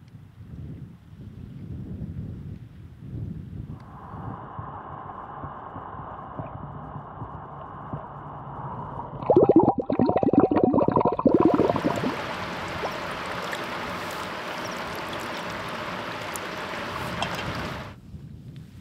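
Muffled underwater gurgle of lake water, then about three seconds of loud, rapid splashing as a hand churns the water at the lake's edge, then a steady even hiss for the rest of the time.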